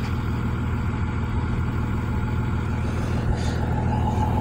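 A 2000 Thomas FS65 school bus's 5.9 Cummins inline-six diesel idling steadily, a low, even engine note.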